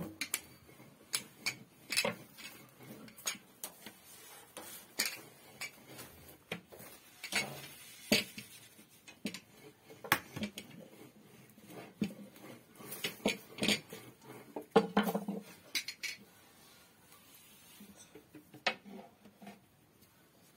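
Kitchen utensils clinking and knocking against metal cookware and dishes while börek is turned and greased during cooking: irregular sharp clinks with brief ringing, loudest about fifteen seconds in, then a short quieter stretch.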